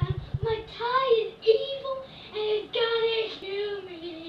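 A young girl singing in a high voice without clear words: a string of short held notes with brief breaks, the last one sliding down in pitch near the end.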